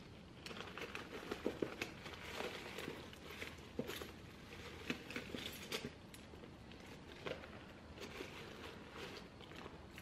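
Handling noise close to the microphone: faint rustling and crinkling with irregular small clicks and taps as small items are gathered up.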